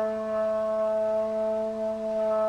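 Chalimeau, a wooden woodwind between clarinet and shawm with a clarinet-like mouthpiece, holding one long steady note.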